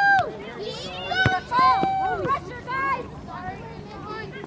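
Sideline spectators shouting drawn-out calls of encouragement at a soccer game, with one sharp knock about a second in.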